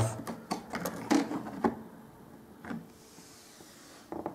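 A plastic trim strip being handled, clicking and knocking lightly against the floor and skirting board: a quick run of clicks over the first second and a half, then one more knock near the three-second mark.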